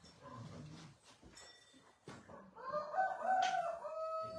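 A rooster crowing once, a long drawn-out crow that begins about two and a half seconds in and is still going at the end. Faint voices murmur before it.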